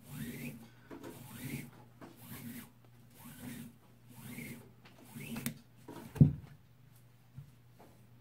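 Paracord being pulled hand over hand through a wrap on a wooden walking stick: a rubbing swish about once a second, then a single thump a little after six seconds.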